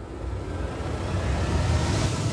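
A swelling sci-fi sound effect: a deep rumble with a rising hiss that grows steadily louder, leading into the outro music.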